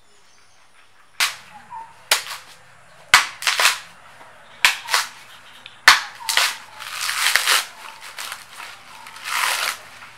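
A heavy knife strikes a coconut's fibrous husk in a string of sharp chops, about seven blows. Near the end come rasping, tearing sounds as the husk fibres are pulled away.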